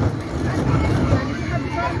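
Chatter of a seated group of children, several voices overlapping, over a steady low rumble.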